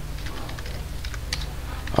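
Computer keyboard being typed on: a few light, irregular keystrokes over a steady low hum.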